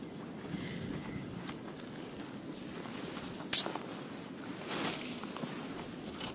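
Handling noise from a spinning rod and reel: a few light clicks and one sharp click about halfway through, over a low steady outdoor background.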